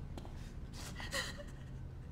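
A short, sharp breath from a person, a gasp, about a second in, over a low quiet background.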